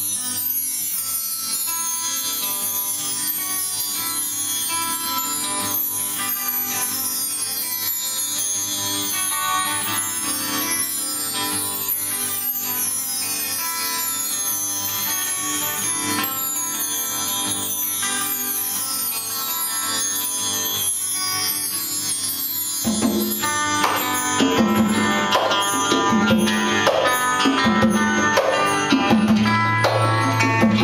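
Acoustic guitar playing a picked melody while bar chimes are swept again and again in shimmering falling runs. About two-thirds of the way in, congas join with a steady hand-drummed rhythm and the music grows louder.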